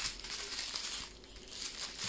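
Plastic packaging crinkling as small plastic bags of diamond-painting drills are handled, fading briefly about a second in and picking up again near the end.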